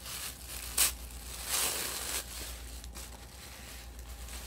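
Tissue paper rustling and crinkling as a wrapped package is pulled open by hand, with a brief sharper crackle just under a second in.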